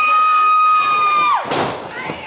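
A spectator's high-pitched scream, held on one note for about a second and a half, rising into it and dropping off at the end, over crowd noise. A burst of crowd noise follows near the end.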